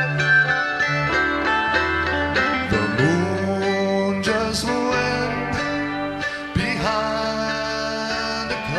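Live band playing a slow country song between sung lines. Acoustic guitar and bass are heard under a melody line that glides and bends between notes.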